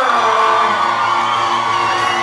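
Live reggaeton music from the PA, with the crowd cheering and whooping over it.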